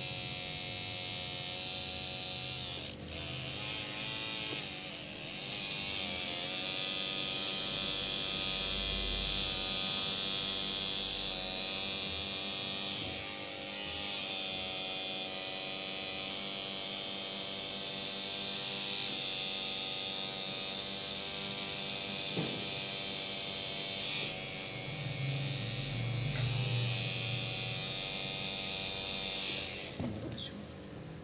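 Electric tattoo machine buzzing steadily as its needle lines the skin, with a brief dip about three seconds in and a slight wavering in pitch just after it.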